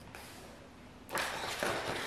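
Plastic laminate sheet rustling and flexing as it is lifted and handled over sticker paper, starting about a second in after a faint, quiet moment.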